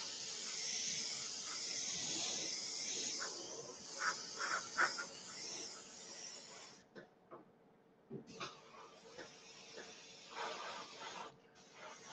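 AirCobra airbrush spraying paint: a steady hiss of air and paint that stops about seven seconds in, starts again about a second later, and cuts off shortly before the end.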